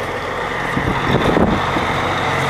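Steady low engine hum with wind noise on the microphone.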